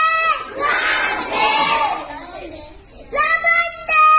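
A class of children chanting the English names of the days of the week in call and response: one boy's voice calls out a day, and the group chants it back together in a loud unison chorus. A second call comes about three seconds in.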